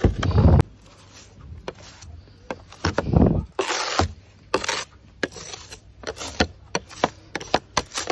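Snow brush sweeping loose snow off a car's window and windscreen in quick, irregular strokes. Two louder low rumbles come through, one right at the start and one about three seconds in.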